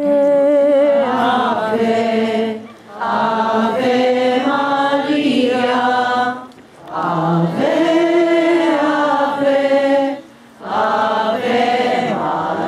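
A group of people singing a hymn together, in sustained phrases broken by short breath pauses about every three to four seconds.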